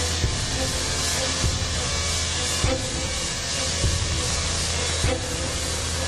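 Large Tesla coil firing: the continuous buzzing hiss of its high-voltage spark discharge over a low mains hum, with a sharper crack about every second as the arcs strike.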